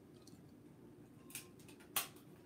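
Quiet room tone, with a brief soft brush of noise past the middle and a single sharp click near the end.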